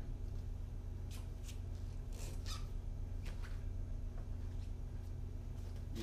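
Marker squeaking on a whiteboard in a series of short strokes as a sharp sign and a note head are written, over a steady low room hum.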